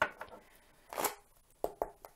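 A deck of tarot cards shuffled by hand: short sharp taps and slaps of the cards, with two quick ones near the end. A woman clears her throat about a second in.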